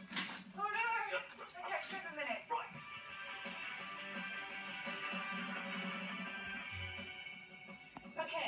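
Five-day-old chocolate point Siamese kittens giving a couple of thin, high mews in the first two seconds or so. From about three seconds in, music from a television in the room takes over as a steady held chord.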